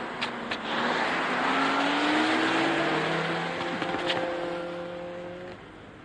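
A car engine accelerating, its pitch rising, then fading away over the last couple of seconds as the car drives off.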